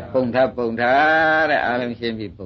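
A Burmese monk's voice preaching in an old recording, with a few quick syllables and then one syllable drawn out into a long, slightly wavering held tone for about a second.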